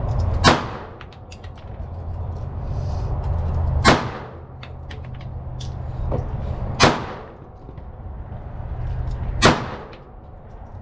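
Pistol fired slowly, four single shots about three seconds apart, each with a short echoing tail. Fainter clicks and pops come between the shots.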